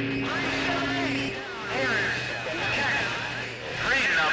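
Garbled, unintelligible voices of distant CB stations coming in over skip on the 27.285 MHz channel, heard through a radio receiver over a haze of static. A steady low hum sits under the voices for the first part and fades out.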